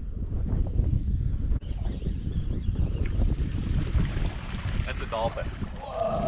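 Wind buffeting the microphone in the open air over the water: a constant low, gusty rumble.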